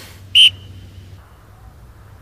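A single short blast on a sports whistle, one steady high tone lasting about a fifth of a second.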